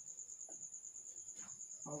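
A faint, high-pitched, steady pulsing trill, as of a cricket, runs evenly through the pause, with a man's voice starting a word at the very end.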